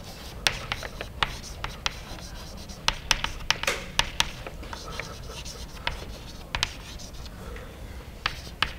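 Chalk writing on a chalkboard: an irregular run of sharp taps as the chalk strikes the board, with short scratchy strokes between them.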